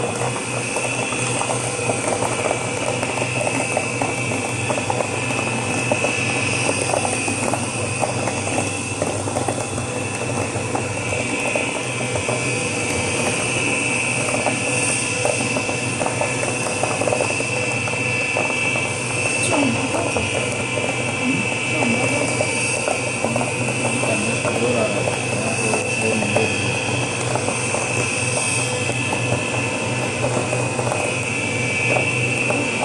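Stainless-steel colloid mill running steadily under load, grinding tiger nuts into milk, with its slurry recirculating through the return pipe into the hopper; a constant motor hum with a steady high whine.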